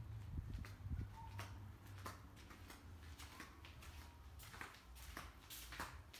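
Faint, irregular footsteps and small handling taps in a quiet garage, over a low steady rumble.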